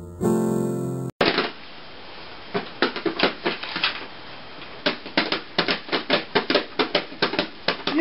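Piano music that cuts off about a second in, then a baby striking the tops of plastic toy drums with his hands: irregular sharp taps, coming thick and fast in the second half.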